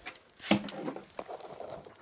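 Handling noise from a phone camera being moved down and set near the floor: rustling and fabric brushing, with a sharp knock about half a second in and a few light ticks after.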